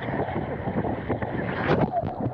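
Water rushing and wind on the camera's microphone as a rider slides feet-first down an open water slide, with a splash near the end as the camera plunges into the pool.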